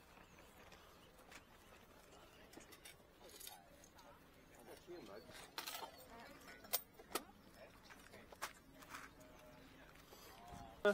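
Very quiet background with faint, distant voices. A few sharp clicks come in the second half.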